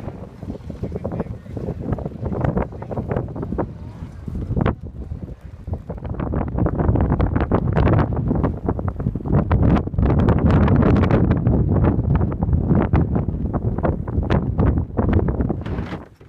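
Strong wind over an open ice sheet buffeting the microphone, a low, gusty rumble with rapid flutter that grows louder about six seconds in.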